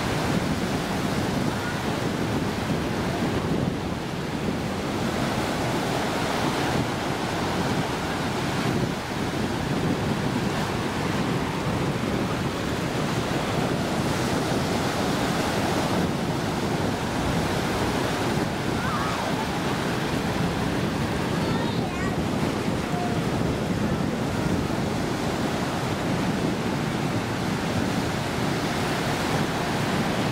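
Ocean surf breaking and washing in the shallows, a steady rushing sound that goes on without pause.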